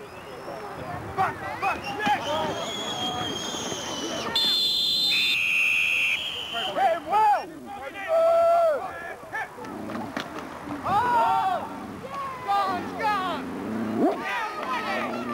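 Players and sideline voices shouting calls across an American football field. About four to six seconds in, a referee's whistle sounds in two steady, high blasts, one straight after the other.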